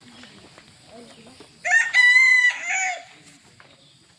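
A rooster crowing once, about a second and a half in. It is a loud call of a little over a second that rises, holds steady and then falls away at the end.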